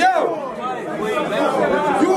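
Speech: a man's raised voice over crowd chatter.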